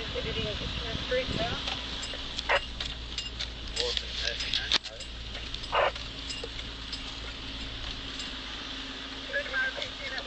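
Four-wheel-drive vehicle driving slowly over a rough dirt trail: a steady engine and road hum, with knocks and rattles as it goes over bumps, several in the middle.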